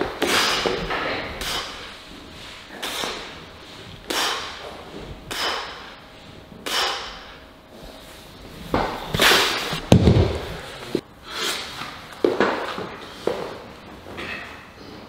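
A lifter breathing out hard with each rep of a heavy incline dumbbell press, short forceful breaths about one every second or so. A heavier thud comes about ten seconds in.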